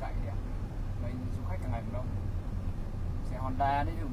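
Steady low road and engine rumble heard inside a moving car's cabin, with short snatches of voice about a second and a half in and near the end.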